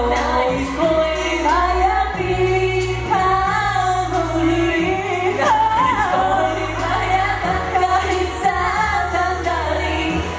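A man and a woman singing a pop duet live into microphones over instrumental accompaniment with a sustained bass line that changes note every second or two.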